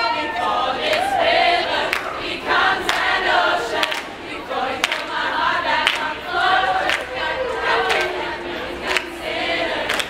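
High school choir singing unaccompanied, with hand claps keeping the beat about twice a second.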